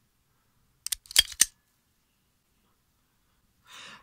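Steel hair-cutting scissors snipping at a pigtail: a quick run of four or five sharp metallic clicks about a second in.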